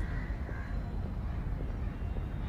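Crows cawing, two short calls in the first second, over a steady low rumble.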